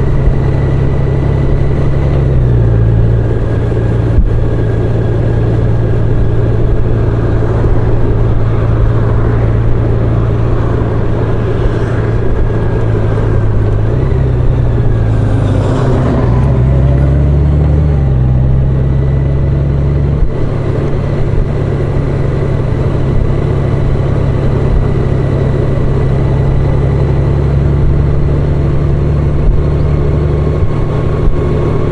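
Touring motorcycle's engine running at a steady road speed, with wind and road noise, heard from the rider's seat. Its low engine note shifts in pitch a couple of times, most clearly around the middle.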